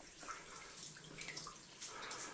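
Faint water dripping from the rock face into standing water on a flooded mine tunnel floor, with a few small splashes.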